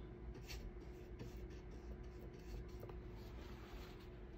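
Faint scratchy strokes of a paintbrush working oil paint onto the painting, a few soft brief strokes over a steady low room hum.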